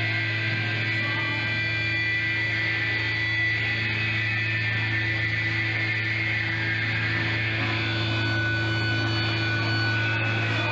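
A steady electric hum from the band's stage amplifiers, with several sustained high tones held over a noisy room haze in the pause before the next song starts.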